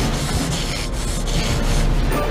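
Loud, steady rasping noise with no clear pitch.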